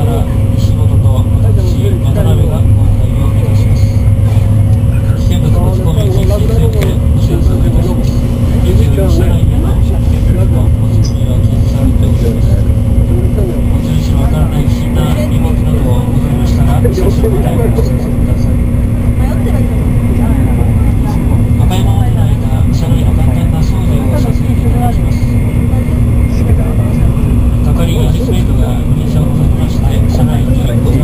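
Cabin noise inside an N700-series Shinkansen running at speed: a loud, steady low rumble with a constant hum.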